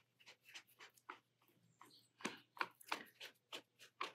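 Faint, quick strokes of a watercolour brush dabbing wet paint onto sketchbook paper, two or three a second, a little louder from about two seconds in.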